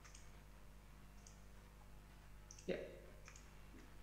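A few faint, widely spaced mouse clicks over near-silent room tone.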